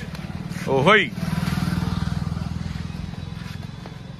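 A vehicle engine running with a low, rapid pulse that swells about a second in and fades toward the end. A short voice call comes about a second in.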